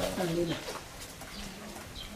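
A low cooing bird call, with a short stretch of a person's voice in the first half-second.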